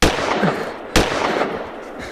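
Two sudden loud bangs about a second apart, each followed by a noisy rush that dies away.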